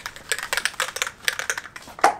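Aerosol spray can of Plasti Dip being shaken hard, its mixing ball rattling inside in quick sharp clicks, about six or seven a second.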